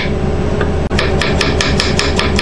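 Kitchen knife chopping vegetables on a wooden cutting board in fast, even strokes, about nine a second. The strokes break off for nearly the first second and then resume, over a steady low hum.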